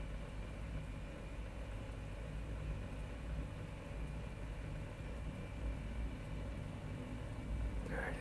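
Steady low rumble and hum with a faint hiss, with no distinct events: background room tone.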